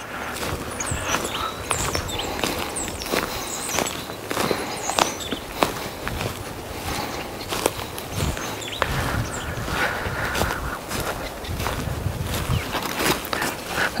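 Footsteps on dry mulch and leaf litter, an irregular run of steps.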